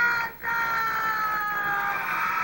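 A high voice holding two long notes, each sliding slowly downward in pitch; the second lasts about a second and a half. It is heard through a television's speaker.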